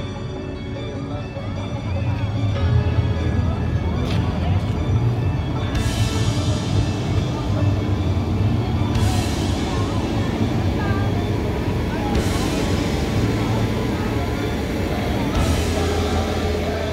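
Music playing over the steady low rumble of a large farm tractor's diesel engine passing close by.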